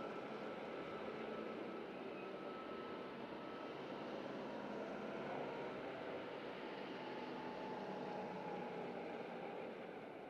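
A compact tractor's engine runs steadily as it tows a groomer over the arena's sand footing, and the sound fades near the end.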